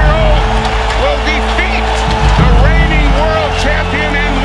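Soundtrack music with a steady held note and deep bass, over many overlapping shouting voices from an arena crowd cheering a win.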